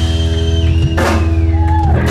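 Live rock band, electric guitar and bass holding steady low notes over a drum kit, with a cymbal crash about a second in.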